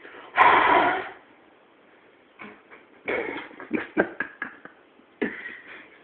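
A strong puff of breath lasting under a second, blown into a heat-softened CD to push out a plastic bubble. It is followed by a scatter of sharp clicks and short handling noises.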